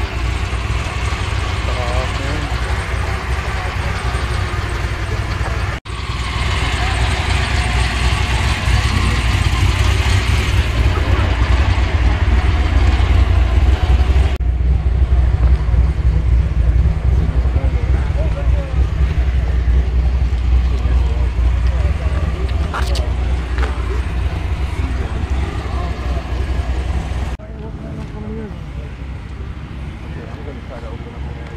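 Indistinct voices of people talking over a strong, steady low rumble, with the sound changing abruptly a few times.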